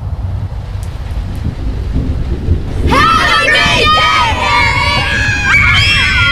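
A low rumble swells up. About three seconds in, a group of girls break into high-pitched, excited screams and squeals over it.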